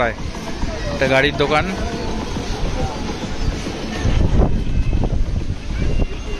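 Wind buffeting a phone microphone, a heavy low rumble that swells about four seconds in, under the chatter of people around. A voice speaks briefly about a second in.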